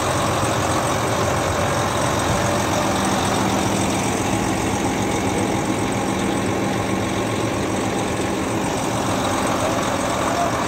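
Hyundai Trago crane truck's diesel engine idling steadily, an even, unchanging hum.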